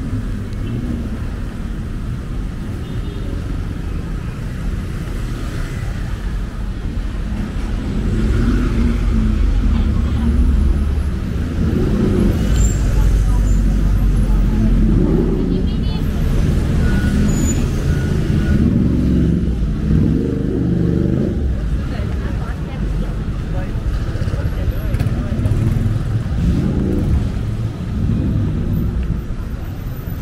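Street traffic running past on a city road, getting louder about a quarter of the way in as vehicles pass close by, with passers-by talking.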